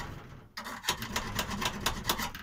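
Hand file rasping on a metal plate in quick short strokes, about six a second, with a brief pause about half a second in: the edge of a freshly drilled hole is being filed.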